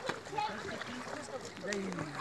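People talking; the voices are fairly high-pitched and too indistinct to make out words.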